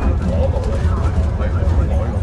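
Steady low rumble inside the lower deck of an Alexander Dennis Enviro500EV battery-electric double-decker bus on the move, with passengers' voices talking over it.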